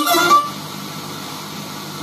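Sanyo M-X960K boombox radio being tuned: a station's music cuts off about half a second in, leaving steady hiss of static between stations.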